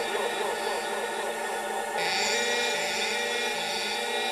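Breakdown in a dark drum and bass mix with no bass or drums: a gritty, atmospheric synth texture, joined about halfway by a brighter hissing layer.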